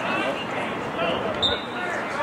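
Several people's voices calling out and talking during an outdoor football play, with a short high chirp about one and a half seconds in.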